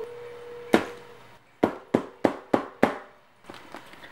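A quick run of six sharp knocks on a hard surface, about four a second, with a single knock before them and a few lighter clicks near the end. A faint steady tone sounds through the first second.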